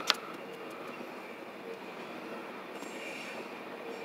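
Intermodal freight train cars carrying highway trailers rolling past over the rails, a steady rumble and rush with a faint high wheel squeal. A single sharp click comes just after the start.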